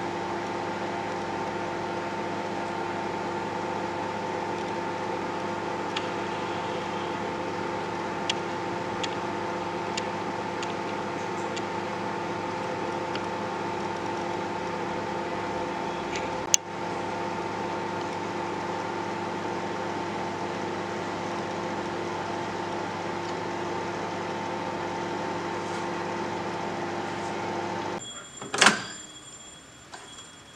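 Microwave oven running on high power: a steady hum with a few faint ticks. The hum stops about two seconds before the end and a sharp click follows as the door is opened.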